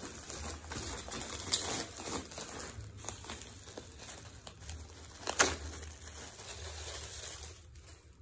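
Plastic packaging crinkling and rustling as a shirt is pulled out of its bag, with two sharper crackles, one about a second and a half in and a louder one past the middle.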